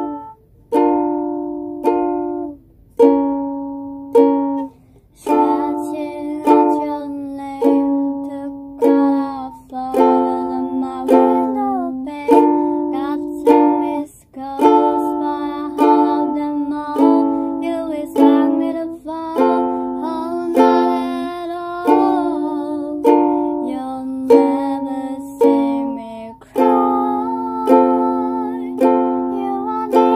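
Ukulele strumming chords in a steady rhythm of about one strum a second. From about five seconds in, a voice sings along over the chords.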